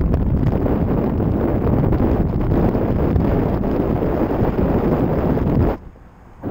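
Wind buffeting the microphone of a GoPro Session action camera during paraglider flight: a loud, steady, low rush of airflow noise that cuts off abruptly near the end.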